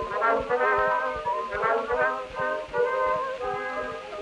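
Instrumental break in a ragtime song from an early-1910s acoustic-era record: the accompanying band plays sustained melody notes over a steady beat, with no voice.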